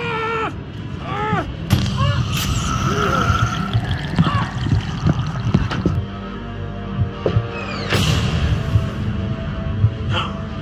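Film soundtrack during a struggle. Short rising-and-falling cries come in the first two seconds, then a low, tense music drone sets in, with scattered hits and thuds over it.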